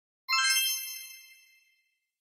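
A single high, bell-like ding sound effect, struck once about a quarter of a second in and ringing away over about a second and a half.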